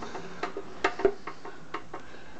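A few light, sharp clicks and taps, the loudest about a second in, as screws are snugged by hand into the nylon hex nuts of a metal equipment cover.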